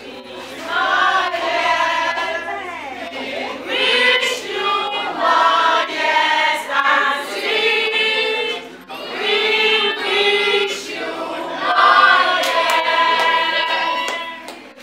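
A group of voices singing together, unaccompanied, with held and sliding sung notes throughout.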